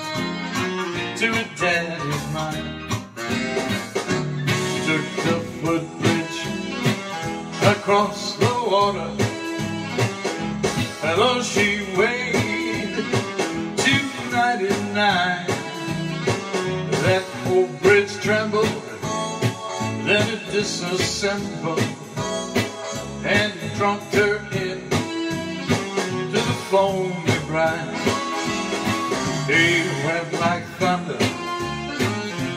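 Solo cutaway acoustic guitar strummed and picked in a steady country-style rhythm, a song played live.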